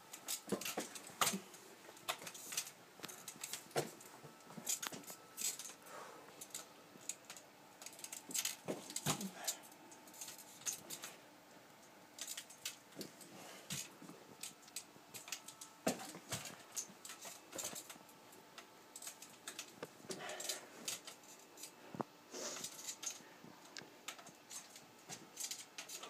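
Crutches clicking and knocking against the floor as a person takes slow, halting steps, a light tap or clink every second or so, irregular.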